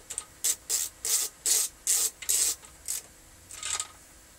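Screwdriver turning a screw in the terminal block of an X-ray transformer head: about eight short, irregularly spaced rasping scrapes of the metal tip working in the screw.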